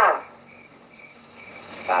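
Faint steady cricket chirring in the background during a pause in conversation. A voice trails off just at the start and another begins near the end.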